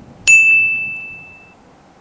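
A single bright 'ding' notification-bell sound effect, as the bell icon on a subscribe button is clicked. It strikes sharply about a quarter second in and rings on one high tone, fading away over about a second and a half.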